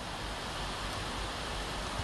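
Steady room tone with recording hiss, no distinct events.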